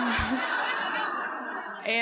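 Audience in a hall laughing together, a dense, even wash of laughter. A single voice comes back in over it near the end.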